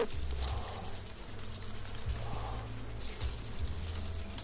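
Leaves and twigs rustling with small light clicks as a hand parts and holds back the branches of a shrub, over a low rumble on the microphone.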